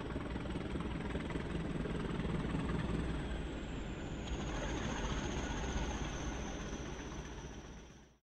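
Steady rumbling engine noise with a thin high whine that dips slightly in pitch about halfway through, fading out near the end.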